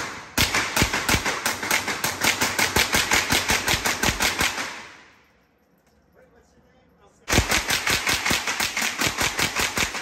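GSG-16 .22 carbine fired in rapid strings in an indoor range, about six shots a second, each shot echoing. A run of about four and a half seconds is followed by a pause of about two and a half seconds, then a second rapid string runs on to the end, emptying a 110-round drum magazine.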